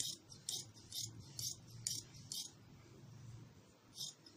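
Scissors cutting through a folded strip of plain cloth: a run of about six crisp snips, roughly two a second, that stops about two and a half seconds in.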